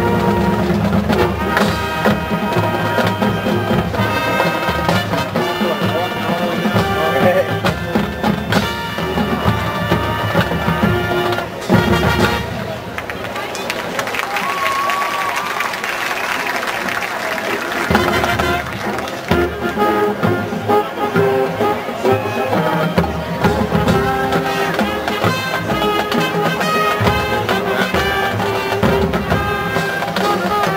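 Marching band playing on the field: brass chords over drums. A sharp accent about twelve seconds in drops to a softer passage, and the full band comes back in loud around eighteen seconds.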